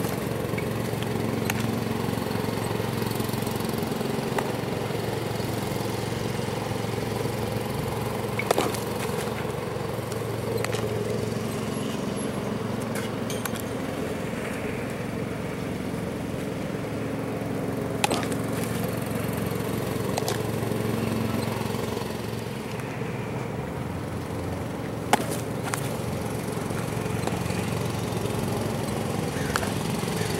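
A small engine, typical of a groundskeeping mower, running steadily throughout, with three sharp pops of a baseball smacking into a catcher's mitt spaced several seconds apart.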